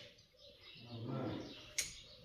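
Faint bird calls with a low dove-like cooing, and a short click near the end.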